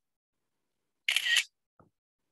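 A computer's screenshot camera-shutter sound effect, once, short and sharp, about a second in.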